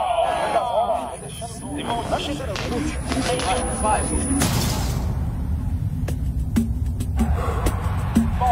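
Short spoken lines in Portuguese over a low soundtrack bed. A brief rushing noise comes about four and a half seconds in, and a run of sharp clicks follows near the end.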